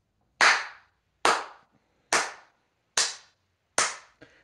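One person clapping slowly with bare hands: five single claps, evenly spaced a little under a second apart.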